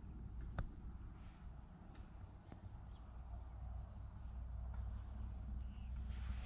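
Insects chirping in a high, steady, pulsing trill that repeats about twice a second, over a low rumble, with a single click about half a second in.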